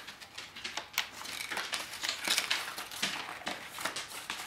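Paper rustling and crinkling as a manila envelope is opened and the letter inside is drawn out, with irregular sharp crackles, the loudest about a second in.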